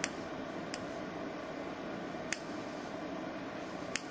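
Small scissors snipping off excess polymer clay: four short, sharp snips at uneven intervals over a steady low hiss.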